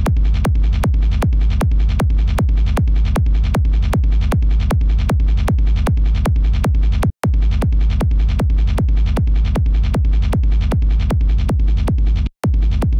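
Distorted hardstyle gated kick drum repeating at about two and a half hits a second. Each hit has a heavy low rumble and a falling pitch at the attack. There is a brief break about seven seconds in.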